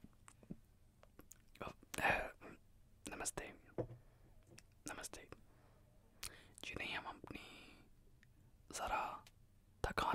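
A man whispering in short, breathy phrases close to the microphone, with faint mouth clicks between them.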